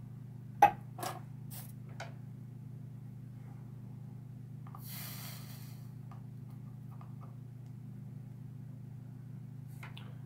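Handling knocks and clicks of a slot car chassis and tools on a workbench, the sharpest about half a second in, then a brief hiss about halfway through as the soldering iron is put to the motor brace joint, over a steady low hum.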